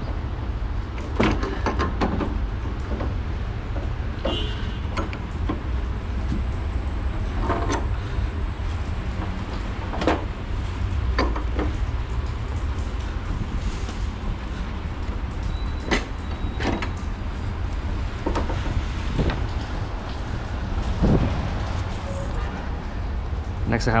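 Black iron gas pipe and a pipe wrench giving scattered metal knocks, clicks and scrapes as the pipe is turned by hand and threaded into a gas valve. All of it sits over a steady low rumble.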